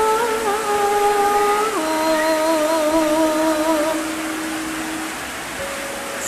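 Javanese bedhaya vocal accompaniment: female singers holding long, slightly wavering notes in a slow melody. The pitch steps down a little under two seconds in, and the singing fades to a faint held note near the end.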